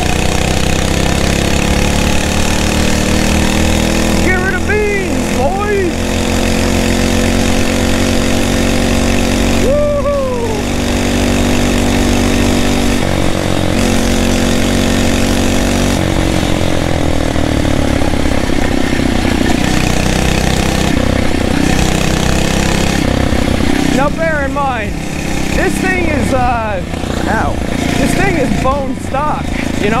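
Small 79cc four-stroke single-cylinder engine of a Phatmoto Rover motorized bicycle running under way, with its governor removed. The engine note holds steady with shifts in pitch as the throttle changes.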